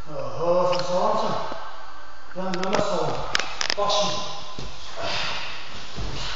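A man's voice calling out in two drawn-out stretches, with a few sharp clicks or slaps around the middle.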